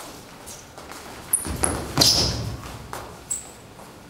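A fencer's sneakers stamping and squeaking on a smooth hall floor during advance, lunge and retreat footwork: a few short high squeaks, with the loudest thud about two seconds in.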